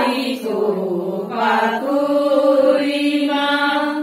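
A group of women chanting together, ending in one long held note.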